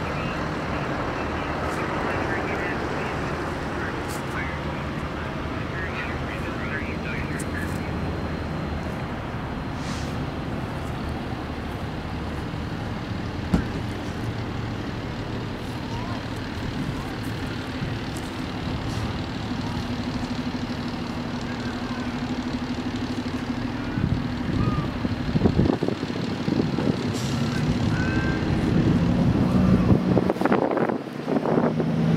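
Steady vehicle engine rumble with scattered voices of onlookers over it. A low steady hum joins about two-thirds of the way through, and the sound grows louder and more uneven near the end.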